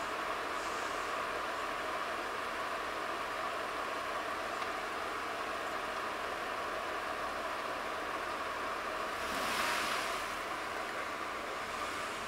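Jeep engine running and its tyres working in deep snow as it backs out of a snowbank, heard from a distance as a steady rushing noise that swells briefly near the end.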